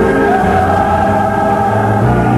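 Gospel choir singing held chords with accompaniment, from a 1975 church radio broadcast recording.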